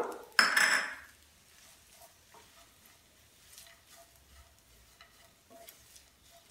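A short loud burst of noise about half a second in. Then faint scattered taps and scrapes of a wooden spatula stirring a dry mixture in a nonstick frying pan.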